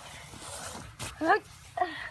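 A young child's voice: two brief high-pitched vocal sounds, one about a second in and one near the end, with a sharp click just before the first.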